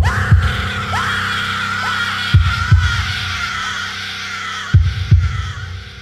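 Horror soundtrack heartbeat effect: slow double thumps, three pairs about two and a half seconds apart, over an eerie noisy drone with wavering higher tones that fades near the end.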